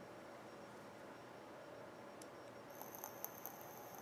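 Quiet room tone with faint clicks of small metal vape parts being handled and screwed together. About two-thirds of the way in, a faint high-pitched whine with light ticks begins.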